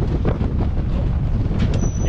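Lifted off-road recovery rig climbing a steep slickrock slope under load while towing an empty tandem-axle flatbed trailer: engine running with a dense low rumble and irregular rattling and knocking from the trailer and rig.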